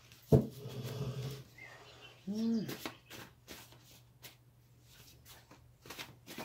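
Oracle cards being handled and shuffled: a sharp click, then scattered soft taps and flicks of card stock. A short hum that rises and falls comes about two and a half seconds in.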